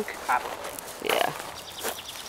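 Young lab/pit-mix dog sniffing at the ground, with light crunching of paws on gravel.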